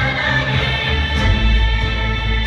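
Stage-show music with a choir singing sustained notes over an instrumental backing; a deep bass note comes in about a second in.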